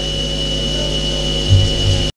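Steady electrical hum and hiss from a public-address system, with a thin high-pitched whine over it. About one and a half seconds in there are two short low thumps.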